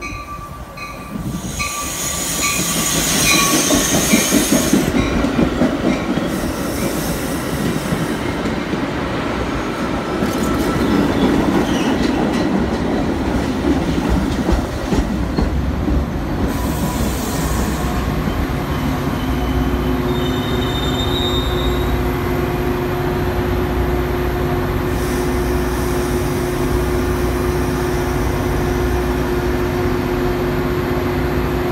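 Metra bi-level push-pull commuter train rolling into the station and braking to a stop, with high-pitched wheel and brake squeal in the first few seconds. Once it has stopped, the diesel locomotive at the rear runs with a steady hum, broken by a few short squeals.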